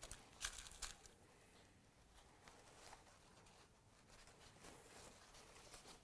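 Near silence, with a few faint rustles of cotton fabric being handled in the first second.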